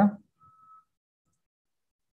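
A man's voice finishing a short word over a video call, then near silence with a faint steady high-pitched tone for about a second.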